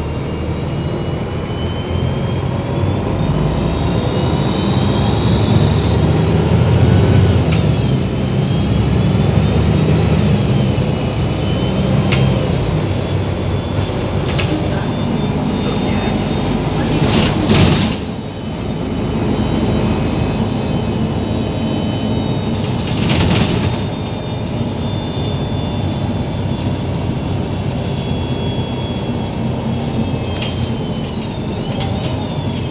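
Inside a Volvo 7700 city bus under way: a steady low drone of engine and road noise, with a faint high whine that rises and falls in pitch. Two sharp knocks sound, a little past halfway and about three-quarters through.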